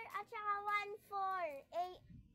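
A child's high voice singing in long notes, some held level and some gliding down or up, in four short phrases.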